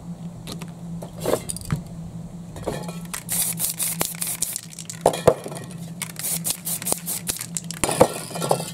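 Aerosol spray paint can hissing in short bursts from about three seconds in, mixed with sharp clinks and knocks of metal cans being handled and set down on the painting surface.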